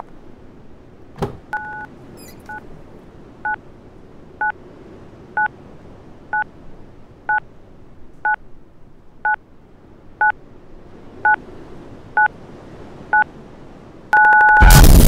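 Telephone keypad tones: a click, then the same short two-tone beep repeating evenly about once a second, the first one slightly longer.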